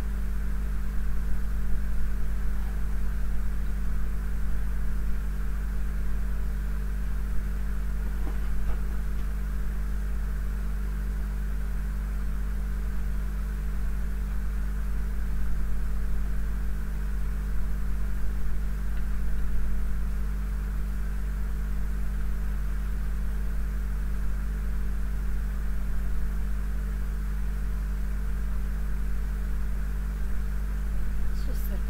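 Steady low hum with a constant hiss over it, unchanging throughout, with no distinct knocks or events.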